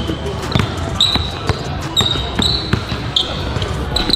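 A basketball is dribbled on a hardwood gym floor, striking about twice a second, mixed with short high-pitched squeaks of sneakers on the floor.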